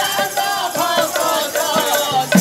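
Odia pala folk song: a man singing through a microphone, with hand strokes on a double-headed barrel drum keeping a steady rhythm.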